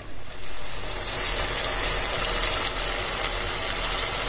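Onion-and-spice paste with yogurt sizzling in oil in a nonstick pan, a steady hiss that rises a moment in and holds: the masala being fried until the oil separates from it.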